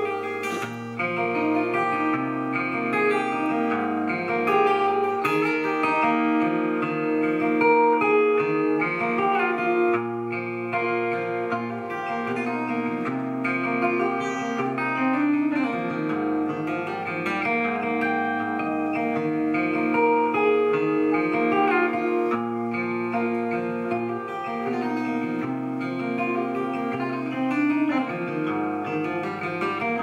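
Solo acoustic guitar played fingerstyle, with many ringing, overlapping notes above low bass notes that change every second or two.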